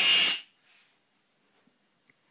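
Serge modular synthesizer output: a band of noise centred on a high pitch, made by the Dual Random Generator's timing pulse amplitude-modulating an oscillator through a VCA. It cuts off about half a second in, and near silence follows.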